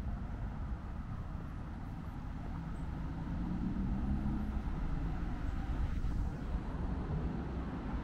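Low steady rumble of road traffic, swelling a little in the middle as vehicles pass.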